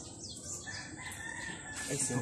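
A rooster crowing faintly: one long drawn-out note starting about half a second in and held for over a second, sinking slightly in pitch.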